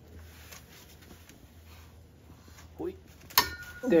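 A steady low hum, then one sharp click about three and a half seconds in from the wrench and socket working a driveshaft bolt.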